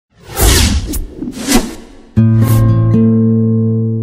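Jaya TV channel logo sting: two quick swooshes, then a held musical chord that comes in about halfway through, changes once and rings on.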